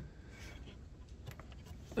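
Faint handling sounds with a couple of light clicks as the wire retaining tabs on the cabin air filter cover are flipped up, over a low steady hum.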